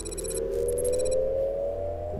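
Cinematic sci-fi sound design: a low steady drone under a tone that rises slowly in pitch, with rapid high electronic beeps through the first second.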